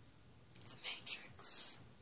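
A person whispering: three short hissing bursts a little after a second in, the middle one sharp and brief.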